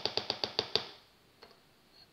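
Metal teaspoon tapping quickly against a plastic tub of ice cream, about ten light clicks a second, stopping just under a second in; one faint tap follows.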